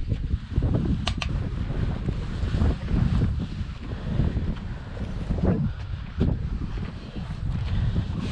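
Wind buffeting the microphone: an uneven low rumble throughout, with a couple of short clicks a little after a second in.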